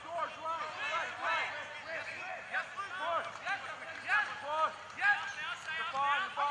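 Several people shouting and calling out at once during rugby play, in short overlapping calls with no clear words.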